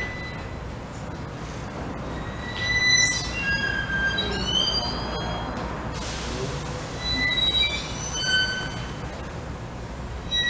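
Solo violin playing high, thin sustained notes and sliding pitches, with a short hiss about six seconds in.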